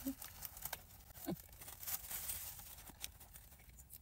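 Faint sounds of biting into and chewing a soft sub sandwich: scattered soft clicks and smacks, after a brief laugh at the very start.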